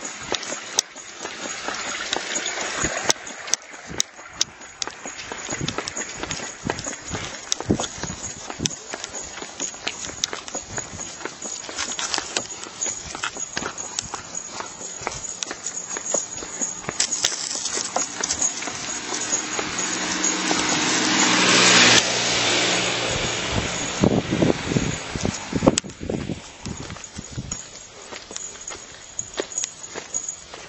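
Footsteps of a person walking on a lane, with irregular clicks and knocks from the handheld camera. A rumble with a low steady hum grows louder to a peak about two thirds of the way through, then drops suddenly.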